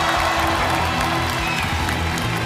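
Studio audience suddenly breaks into applause and cheering, over background music.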